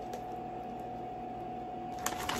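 A steady hum at a single pitch, under light room noise.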